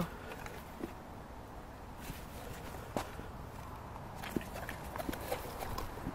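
Footsteps on a wet, muddy bank covered in fallen leaves, with a few irregular light knocks and rustles as a landing net holding a freshly caught pike is carried.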